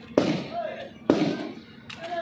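A man coughing: two sudden, loud coughs about a second apart, each trailing off with a rasp of voice.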